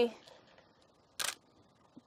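A camera shutter fires once, a single short sharp click about a second in.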